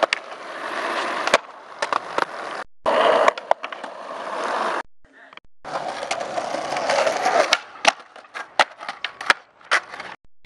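Skateboard wheels rolling over concrete sidewalk, with sharp clacks of the board popping and landing, the clacks coming thick and fast in the last couple of seconds. The sound breaks off abruptly several times at cuts between clips.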